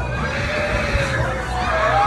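Several people screaming, long wavering cries that overlap, over a steady low rumble.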